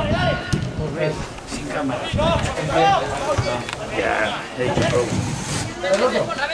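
Indistinct voices of people talking and calling out, heard throughout with no clear words.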